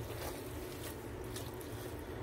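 Pasta in a cream sauce simmering in a pot while being stirred with a spatula: a faint, steady wet sound with a few soft ticks.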